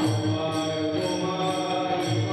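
A group of voices chanting a devotional song together in sustained tones, kept in time by small hand cymbals struck about twice a second.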